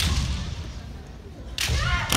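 Kendo bout: a sharp crack of bamboo shinai right at the start, with low thuds of feet on the wooden floor, then a fencer's high kiai shout that bends up and down, starting about a second and a half in.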